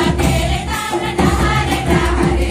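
Folk dance music: a group singing in chorus over a steady drum beat with jingling percussion.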